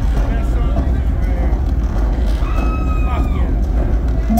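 Live venue between songs: a loud, steady deep rumble from the PA with crowd voices and chatter over it. A high held tone sounds briefly a little past halfway, just before the band starts.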